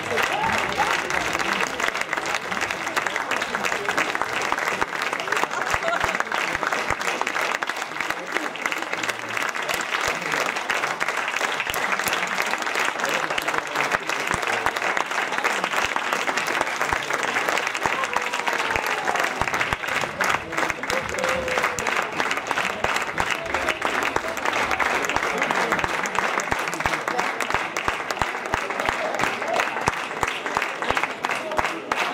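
Theatre audience applauding steadily through a curtain call, dense clapping without a break, with a few voices calling out in the crowd.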